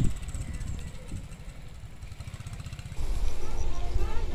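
Wind buffeting a camera microphone on a moving bicycle, a low fluttering rumble that gets louder about three seconds in.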